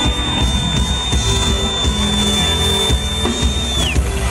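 Live soul band playing an instrumental stretch: drum kit and bass guitar, with the bass stepping between notes. A thin high tone is held steady throughout and slides down in pitch near the end.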